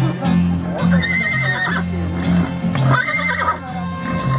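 A horse whinnying twice, each call about half a second long with a wavering pitch, over background music with a steady bass line.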